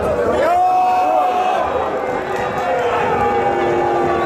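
A man's voice calling out in long, held, drawn-out tones over the steady noise of a stadium crowd as a goal is scored, in the manner of a football commentator's goal cry.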